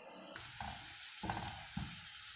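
Sliced onions and green chillies sizzling in hot oil in a frying pan, the steady sizzle starting suddenly about a third of a second in, with a few soft knocks over it.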